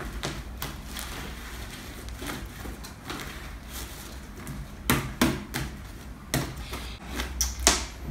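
Pink slime being pressed, rolled and gathered up on a wooden tabletop by hand, giving off scattered small clicks and pops, with a few sharper snaps in the second half.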